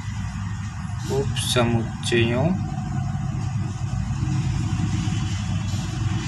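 A steady low background rumble runs under one short spoken word.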